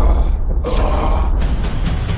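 Cinematic trailer sound effects: a loud, noisy effect over heavy low bass. The high end drops out briefly twice.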